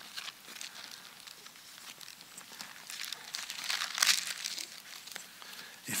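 Thin Bible pages rustling as they are leafed through by hand, with soft rustles throughout and louder ones a few seconds in, the loudest about four seconds in.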